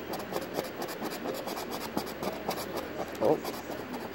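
A coin scratching the coating off a scratch-off lottery ticket in quick, repeated short strokes.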